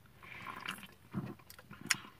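A person drinking from an aluminium energy drink can: a soft slurp of liquid, a swallow about a second in, and a small sharp click near the end.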